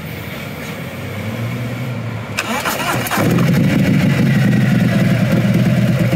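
Harley-Davidson Road Glide Special V-twin being started: about two and a half seconds in the starter cranks briefly with a rising whine, then the engine catches and settles into a loud idle.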